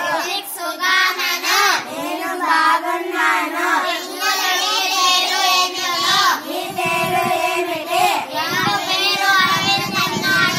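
A group of young children singing together in unison, in Malayalam, their voices running on with few breaks.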